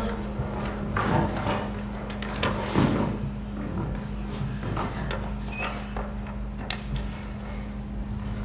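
A steady low electrical hum with a few soft, scattered knocks and rustles.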